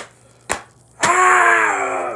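Two sharp clicks about half a second apart, then a man lets out a loud, long, strained wail that sinks slightly in pitch.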